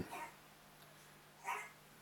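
Quiet room tone with a faint steady low hum, and one short faint sound about one and a half seconds in.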